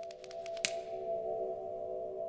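Logo-sting sound design: a sustained chord of a few steady tones, with a run of quick clicks in the first half-second and one sharp crack about two-thirds of a second in.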